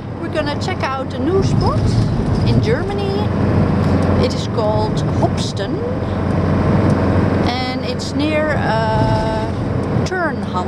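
Steady engine and road noise inside the cabin of a moving Mercedes-Benz camper van, under a woman's talk.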